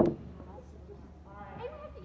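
One sharp knock right at the start that dies away quickly, followed by faint chatter of people talking.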